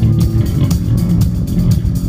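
Live blues band playing loudly: electric guitar over bass and drums, with regular drum and cymbal hits.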